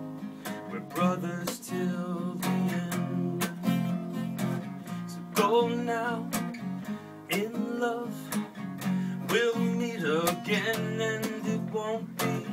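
Acoustic guitar strummed steadily in a slow ballad, with a man's singing voice coming in over it in a few places.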